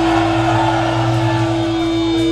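Electric guitar and bass amplifiers droning between songs: one steady held tone over a low hum, with crowd noise underneath.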